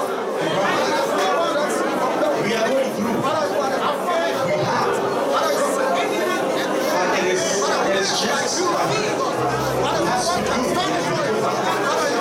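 A congregation praying aloud all at once: many voices overlapping in a steady, unintelligible babble.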